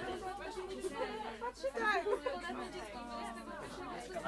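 Several people talking at once in a room, a mix of overlapping voices.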